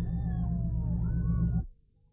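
Heavy truck engine rumbling, with several high wavering squeals gliding slowly over it. All of it cuts off abruptly near the end.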